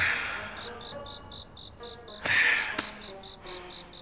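A cricket chirping in a steady pulse, about four chirps a second, over soft background music. There is a short breathy rush of noise at the start and a louder one a little past two seconds in.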